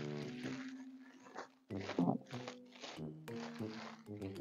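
Faint background music with soft steady notes, over several short bursts of cellophane wrapping crinkling as it is pulled up and gathered around a cup.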